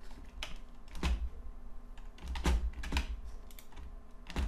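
A handful of separate clicks from a computer keyboard, irregularly spaced, over a faint low hum.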